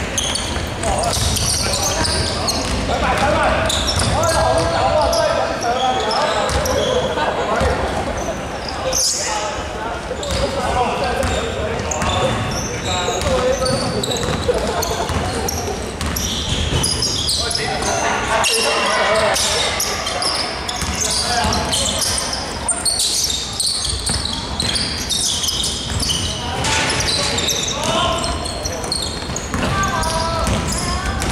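Basketball dribbled and bouncing on a hardwood court, with players' voices calling out, echoing in a large sports hall.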